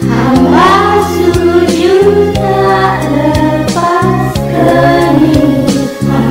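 A group of voices singing a song together over instrumental backing with a steady beat.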